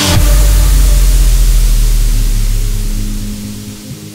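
Electronic dance track at a transition: the drums cut out and a deep bass boom with a hissing noise wash sets in, both fading away over about three seconds, while a held synth note carries on underneath.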